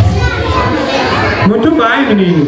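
Children chattering and calling out in a large hall, with one voice calling out clearly near the end.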